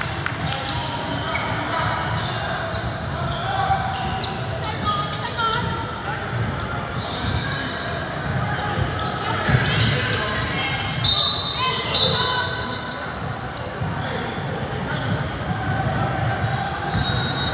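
Basketball game sounds in a gym: a ball bouncing on the court in repeated short thumps, under scattered voices of players and people on the sidelines, with the echo of a large hall.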